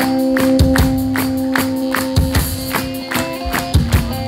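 Live rock band playing: a held chord that shifts to new notes near the end, over a steady drum beat with regular cymbal strokes.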